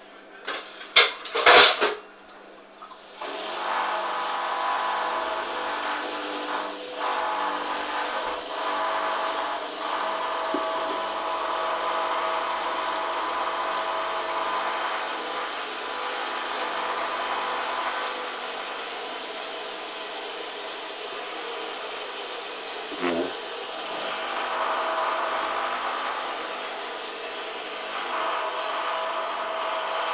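Hoover DYN 8144 D washing machine: a few loud knocks about a second in, then the motor starts and the drum spins steadily with a whining hum.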